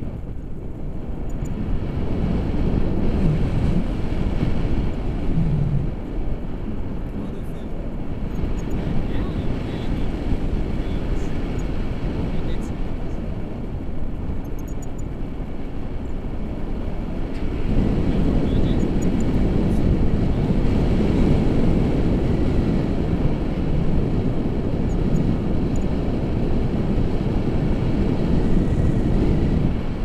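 Wind from the paraglider's airspeed buffeting an action camera's microphone in flight, a steady low rushing that grows louder about two-thirds of the way in.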